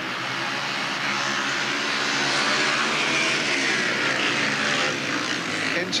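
Several 500cc single-cylinder speedway motorcycles racing on a shale track, a continuous mixed engine drone that swells slightly a couple of seconds in.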